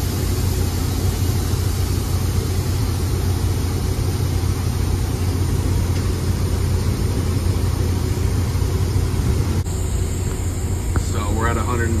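Paint spray booth's air system running with a steady, loud hum, its fans moving air during the purge cycle that comes before the bake. The sound changes abruptly about ten seconds in.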